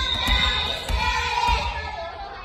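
Several young voices calling out together in drawn-out, sing-song shouts, echoing in a gymnasium.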